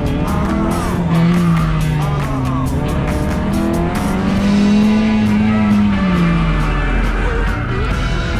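Track car's engine pulled up and down through the rev range during a drift run, climbing about a second in and again towards five seconds, then falling off near the end, with tyres squealing. Rock music plays over it.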